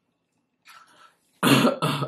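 A woman coughing: a faint breath, then two short, harsh coughs in quick succession near the end.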